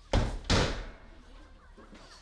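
Two sharp bangs in a room, about a third of a second apart near the start, each with a short echo.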